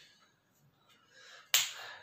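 Near silence, then a single sharp click about one and a half seconds in that trails off in a brief hiss.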